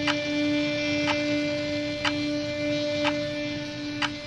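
Background score of a sustained droning tone with a sharp tick about once a second, like a clock.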